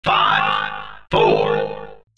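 Countdown-intro sound effects: two sudden pitched hits about a second apart, each ringing and fading away over about a second.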